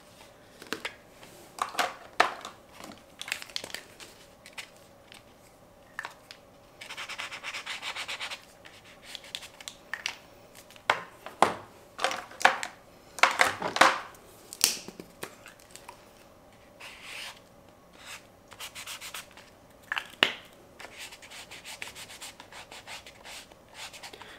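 Drawing materials scribbling and rubbing on sketchbook paper: irregular short scratchy strokes, with a fast back-and-forth scribble lasting about a second and a half partway through and the loudest strokes in the middle.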